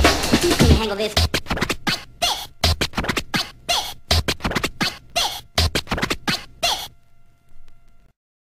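Old-school UK breakbeat track: about a second in, the full beat drops out and leaves a run of quick turntable scratches. The scratches stop about a second before the end, leaving only faint held tones.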